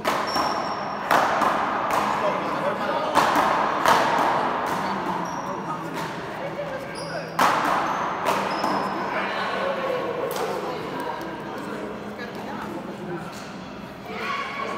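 Paddleball doubles rally: the big ball hit with paddles and off the court wall, a string of sharp, irregular smacks about a second or more apart that echo around the large hall.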